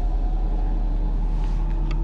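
Wind on the camera microphone, a steady low rumble.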